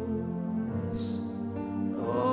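Electric keyboard playing slow, held chords, with a short hiss about halfway through.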